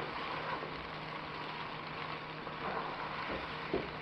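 Chopped onion, peppers, tomato, scallion and thyme sizzling steadily as they sauté in vegetable and coconut oil in a wok, with a few light knocks of the spoon stirring in the second half.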